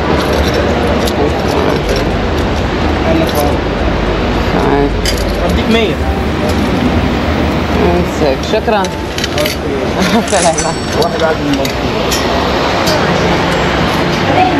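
People talking, with a steady hubbub of a station hall behind them and a few light clinks and clicks scattered through.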